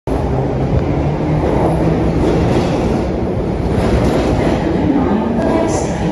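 London Underground Bakerloo line 1972 Stock train pulling out of the platform and moving away, with the steady running noise of its motors and wheels filling the tiled station.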